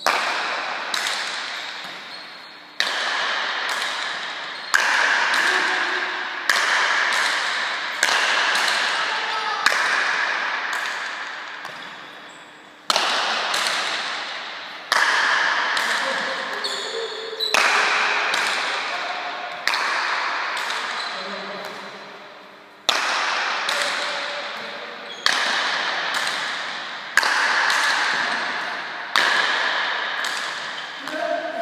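Rally of paleta cuir pelota: the leather ball struck by wooden paletas and smacking off the court walls. Sharp cracks come about every two seconds, each ringing out in a long echo through the indoor court, with a pause of about three seconds partway through.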